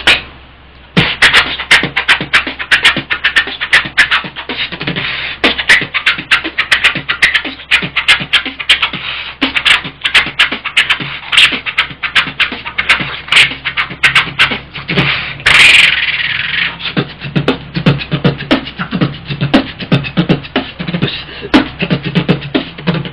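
Beatboxing: a fast, dense run of mouth-made drum hits and clicks starting about a second in, with a long hiss about two-thirds of the way through and heavier deep kick-like hits after it.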